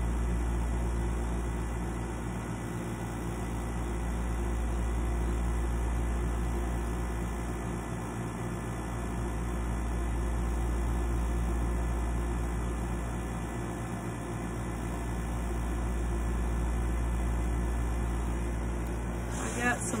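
A steady low hum that swells and fades slowly, about every six seconds.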